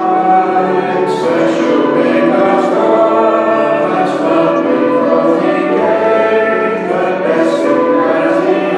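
A congregation singing a children's worship song with instrumental accompaniment, the singing starting right at the beginning after a keyboard introduction.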